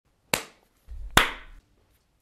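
Two sharp hand claps, about a second apart, the second louder and wrapped in a short low thump.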